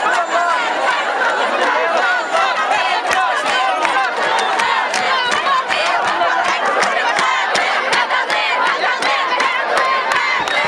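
Large crowd of women shouting together, many high voices overlapping without a break.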